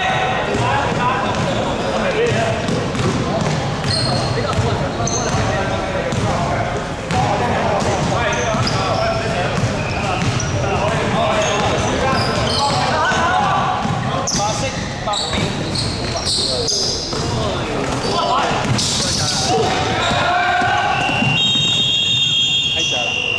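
Basketball being played on a wooden court in a large echoing sports hall: a basketball bouncing, short high-pitched sneaker squeaks, and players' voices calling out. Near the end a referee's whistle blows a steady high note.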